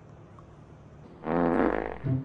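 A single drawn-out fart noise, a comic sound effect, starting a little past halfway and lasting under a second.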